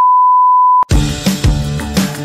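A steady 1 kHz test-tone beep, the tone that goes with TV colour bars, held for just under a second and cut off abruptly with a click. Background music with a steady beat follows.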